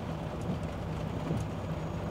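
A Volvo 440 truck's diesel engine idling steadily, heard from inside the cab, with rain falling on the cab and windscreen.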